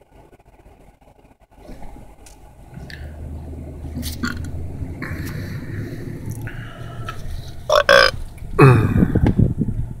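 A person lets out two loud burps near the end, the second one longer. Under them is the low running and road noise of the car, heard from inside the cabin as it drives off.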